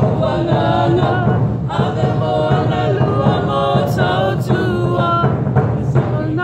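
A Samoan vi'i (praise song) sung by a group over music, playing steadily for the dance.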